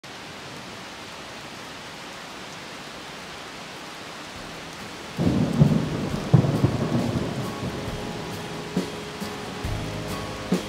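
Steady rain, then a roll of thunder about five seconds in that rumbles and slowly fades. Instruments come in near the end.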